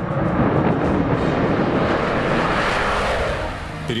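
Jet fighters' engines at takeoff power, a loud, steady roaring rush that builds and then eases off near the end. Background music runs underneath.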